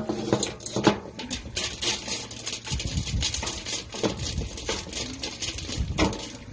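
A root hook scraping loose yellow granular soil from a satsuki azalea's root ball: a dense run of quick scratching, crackling ticks. There are a few louder knocks at the start and just under a second in.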